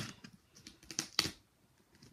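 Fingers tapping and rubbing on top of a cardboard shipping box: a handful of light, uneven clicks and scrapes, the loudest a little over a second in.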